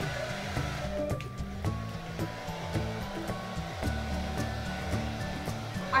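Hand-held hair dryer blowing steadily, under background music with a stepping bass line.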